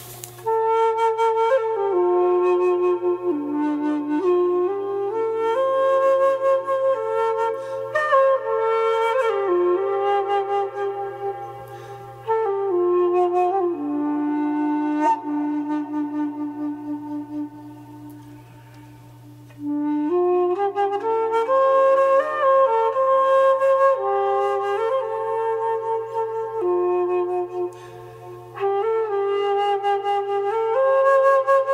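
End-blown bamboo flute tuned to the shakuhachi scale, playing a slow melody of stepped notes with small slides between some of them, in phrases broken by short pauses. A steady low tone sounds underneath.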